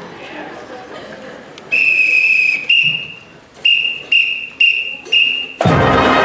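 A whistle count-off, one long blast and then five short evenly spaced blasts, cues the band to start. A full pep band of trumpets, trombones and other brass comes in together near the end.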